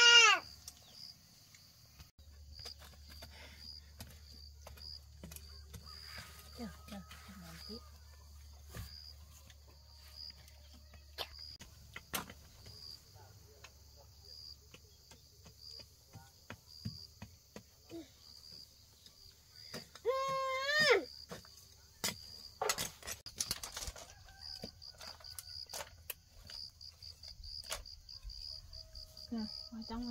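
A baby gives a short crying call about twenty seconds in, over a steady, pulsing chirr of insects and scattered light knocks. A cluster of sharp chops from a machete on wood follows just after.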